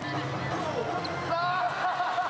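A basketball being dribbled on a hardwood gym floor during a game, under voices calling out in a large, echoing arena.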